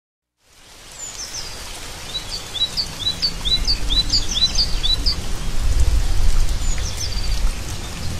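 Birds chirping in quick, high bursts over a steady hiss of rain, fading in from silence within the first half second. The chirps thin out after about five seconds while a low rumble swells underneath.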